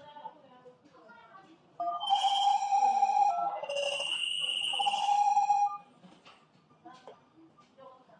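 Faint keypad presses, then from about two seconds in a loud electronic prompt of held, stepped tones with a high whistle over them, lasting about four seconds. It is a GSM alarm host's response to keypad commands sent over a phone call.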